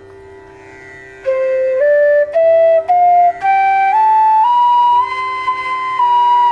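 Bamboo bansuri playing the sargam up the scale after about a second of quiet: eight clear notes, one after another, each about half a second long, climbing to the upper Sa, which is held.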